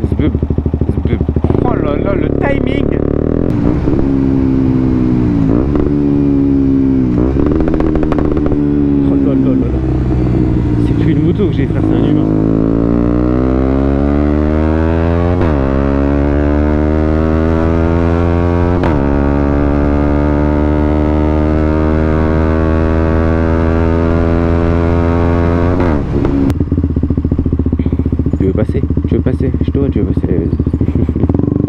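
Single-cylinder engine of a KTM 125 Duke with an Akrapovič exhaust, accelerating and shifting up through the gears: the pitch climbs and drops back with each upshift. It then holds a steady cruise for several seconds before the throttle is closed and the revs fall near the end.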